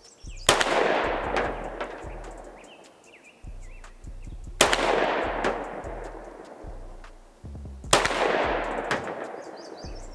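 Three pistol shots, about three and a half seconds apart, from a semi-automatic handgun fired slowly for an aimed group. Each is a sharp crack followed by a long echo that fades over a couple of seconds.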